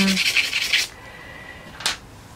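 Pastel stick scratching across sanded pastel paper in quick, short strokes as the fur of a paw is drawn, stopping abruptly about a second in; a brief click near the end.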